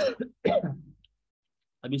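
A man clearing his throat: two short, rough bursts in the first second.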